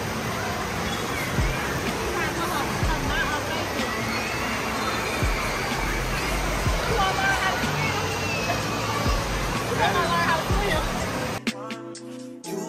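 Indoor water park din: steady rushing and sloshing water with scattered children's voices and shouts. Music starts near the end.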